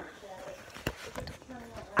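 Handling noise from a handheld camera being moved: a few faint, short knocks and clicks over low hiss, the clearest about a second in.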